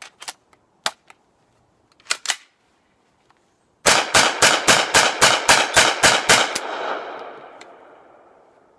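A few clicks as the 9mm Chiappa M1-9 carbine is loaded, then a rapid semi-automatic string of about fourteen shots at roughly five a second, the echo trailing away for a couple of seconds after the last. The carbine cycles the whole 32-round Pro Mag string of 147-grain flat-nose rounds without a stoppage.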